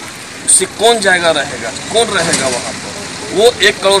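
A man speaking Hindi close to the microphone, starting about half a second in after a brief pause.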